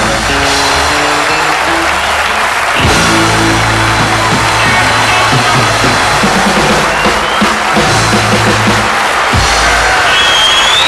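Live rockabilly band playing loudly on stage with drums and cymbals, electric guitars and upright bass, and an audience applauding and cheering over the music.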